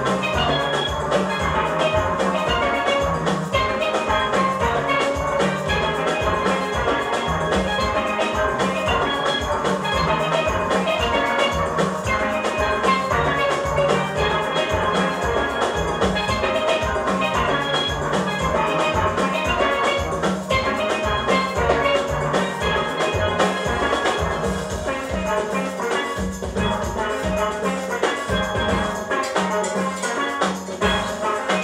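A steel orchestra playing live: many steel pans sounding a tune together over a steady, regular low beat.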